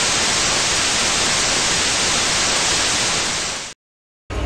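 Steady, loud TV-static hiss, a white-noise transition sound effect, which fades quickly and drops to silence shortly before the end.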